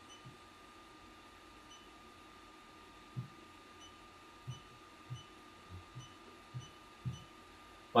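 A fingertip tapping the touchscreen control panel of a Hikvision ISD-SMG318LT-F walk-through metal detector as the sensitivity values are stepped up: about seven soft, dull taps, starting about three seconds in, over a faint steady high tone.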